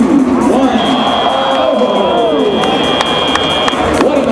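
FRC field end-of-match buzzer: one steady high tone starting about a second in and lasting about three seconds, marking the end of the match, over crowd voices in the arena.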